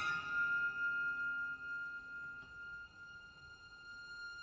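Symphony orchestra in a soft passage: violins hold one long high note while the ring of a struck chord dies away, and the music grows quieter near the end.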